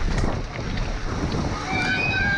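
Wind buffeting the helmet-camera microphone on a fast downhill mountain bike run, over the rumble and clatter of the bike on a rough dirt trail. Voices start shouting near the end.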